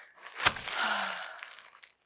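Plastic wrapping crinkling as hands handle a wrapped kit, with a sharp crack about half a second in followed by about a second of crackling.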